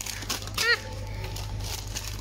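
Plastic snack packet crinkling as it is handled, with a short "ah!" exclamation just over half a second in, over a steady low hum.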